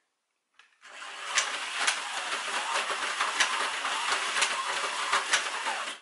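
Micro Scalextric slot car running round its plastic track: a small electric motor whirring with the rattle of the car in the slot, and a few sharp clicks along the way. It starts about a second in and stops just before the end.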